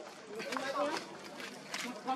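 Indistinct human voices talking in the background, with a short sharp click near the end.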